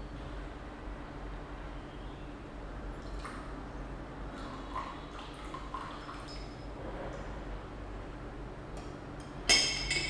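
Rinse water from dried rose buds poured out of a glass teapot into a ceramic bowl, a faint trickle. Near the end, a sharp glass-on-glass clink that rings briefly as the glass teapot is set back in place.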